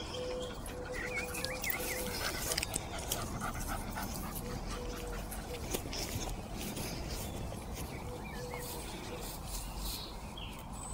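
A dog panting and sniffing as it noses through long grass, with the grass rustling against it. Birds call in the background, including a repeated low cooing.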